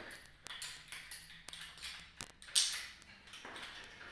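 Light metal clinks and clicks from a carabiner and ankle-strap hardware as a resistance band is hooked up and pulled, a few separate ticks over several seconds. There is a short rustle about two and a half seconds in.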